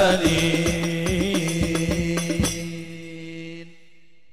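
Hadroh ensemble: male voices chanting a devotional song over sharp rebana frame-drum strokes. The drumming stops about two and a half seconds in, and the voices hold a final long note that fades out near the end, closing the piece.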